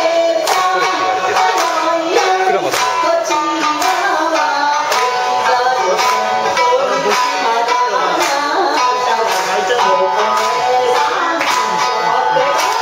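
Shamisen played with a plectrum, accompanying a group of voices singing a Shōwa-era banquet song together, with a steady beat of sharp strokes and hand claps in time.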